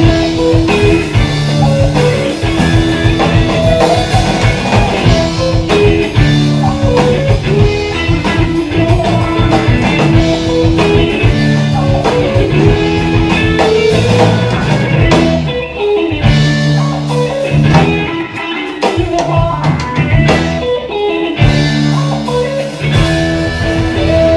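Live jam band playing: electric guitar lines over bass, drums and keyboards. The beat breaks off briefly a couple of times in the second half before the band comes back in.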